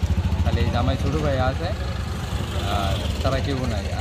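A man talking over a steady low rumble.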